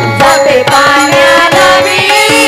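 Marathi gavlan bhajan music: repeated hand-drum strokes under a steady held melody tone, with a voice gliding through the first second.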